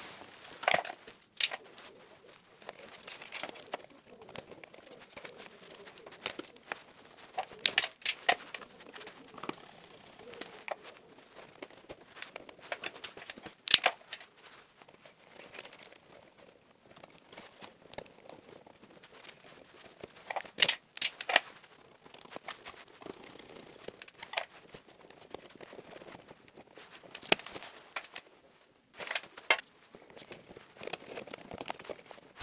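Insulated wires being handled and routed inside an electrical distribution board: rustling of wire insulation with scattered sharp clicks and ticks, a few of them louder.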